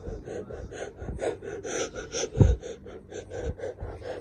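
A person laughing in quick breathy gasps, about five a second, with a loud low thump about two and a half seconds in.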